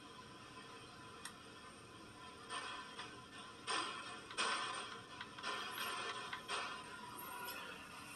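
A spirit box, a radio sweeping rapidly through stations, running: a faint hiss with a thin steady high tone, broken from about two and a half seconds in by choppy bursts of static and radio fragments roughly once a second. The investigator takes the fragments for a spirit speaking.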